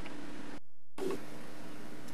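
Steady hiss and low hum of Video 8 camcorder tape audio, cutting out completely for about a third of a second a little past the half-second mark at a join between two recordings, then coming back with a short thump.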